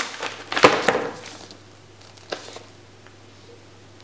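Paper record sleeve rustling and sliding as a sleeved vinyl LP is handled and lifted out of its box, loudest about half a second in, with a light tap a little after two seconds.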